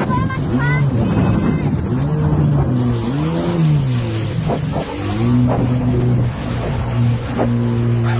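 Jet ski engine running at speed, its pitch rising and falling several times as the throttle is worked, with rushing wind and water noise.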